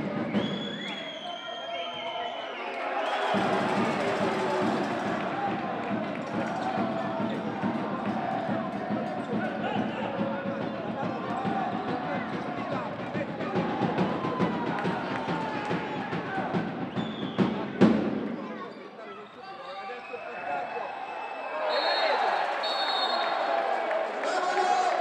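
Indoor handball-hall sound: crowd noise with a ball bouncing on the court and drumming or music from the stands, with a loud knock near the end.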